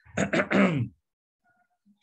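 A man's short vocal noise, like a throat clear or grunt, in the first second, then silence.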